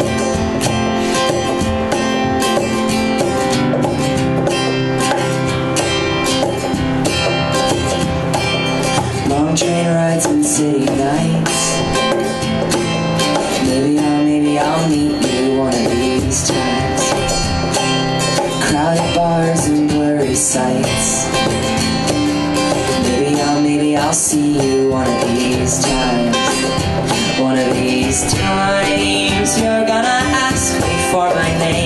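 Live acoustic song: strummed acoustic guitar with a cajon beat, and a man's voice singing from about ten seconds in.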